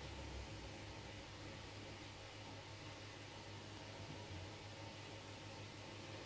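Faint, steady background hiss with a low hum: room tone.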